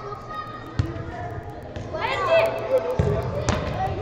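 A football being kicked during a five-a-side match: a sharp thud about a second in and two more near three seconds, with players shouting in between.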